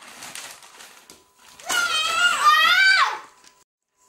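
Faint crinkling of gift wrapping paper being torn open, then a child's high-pitched, drawn-out wordless exclamation lasting about a second and a half, starting about two seconds in.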